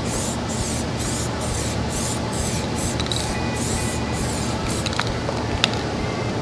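Aerosol rattle can of UV-curing primer spraying in one continuous hiss onto a car panel, the hiss rising and dipping about three times a second as a light first coat goes on.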